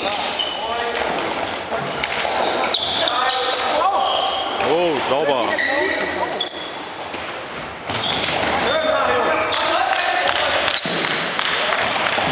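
Indoor floor hockey in play in a gym hall: players shouting and calling to each other, with sharp clacks of plastic sticks and ball and short high squeaks of sports shoes on the hall floor.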